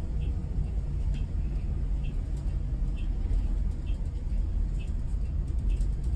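Steady low rumble of a bus driving on a highway, heard from inside the cabin, with a faint short high tick about once a second.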